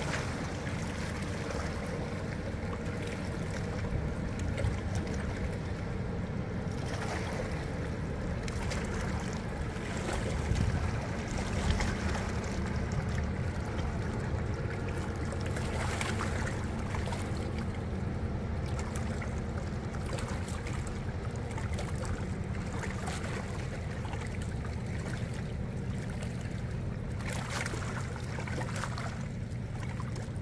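Ambience at the bank of the Rhine: water lapping over a steady low drone.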